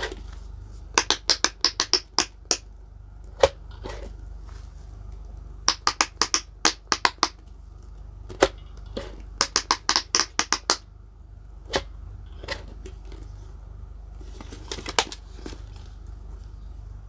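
Silicone bubbles of an electronic push pop fidget toy pressed down one after another, popping in three quick runs of about eight or nine sharp clicks each. A few single pops fall between the runs.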